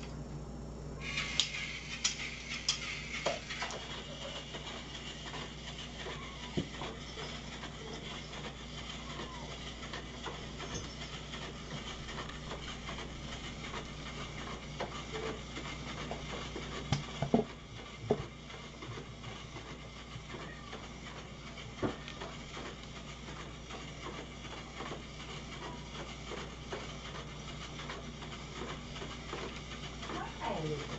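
A steady room hum with scattered knocks and clatter as feeding dishes and pans are handled and set down. There is a cluster of knocks early on and the loudest pair about seventeen seconds in.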